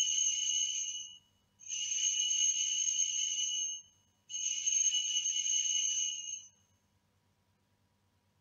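Sanctus bells rung three times, each ring a bright jingling peal about two seconds long, marking the elevation of the host after the words of institution.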